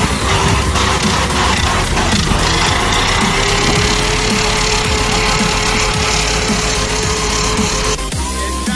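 Lexus SC300's 1UZ 4.0-litre V8 held at high revs during a burnout, the rear wheels spinning in dirt. The engine note creeps up over the first few seconds, then holds steady under a dense rush of noise.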